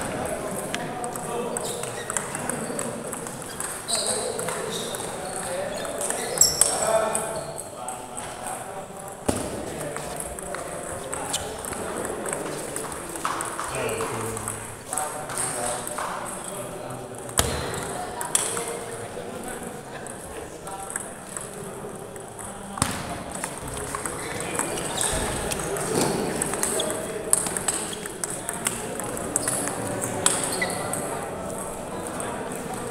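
Table tennis balls clicking off paddles and tables at irregular intervals, over a steady murmur of people talking in a large sports hall.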